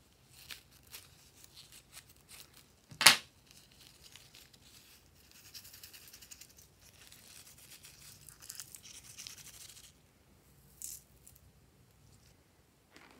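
Scissors snipping through a rubber balloon, with one loud sharp snap about three seconds in. Then a soft, dense patter as small plastic sequins are shaken out of the cut balloon onto the slime.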